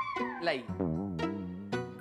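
Sitcom background music with a playful, gliding melody under a drawn-out, wavering voice.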